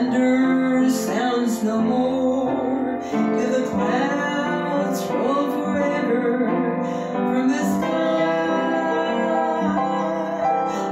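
Upright piano playing a slow gospel hymn, with sustained chords moving from one to the next.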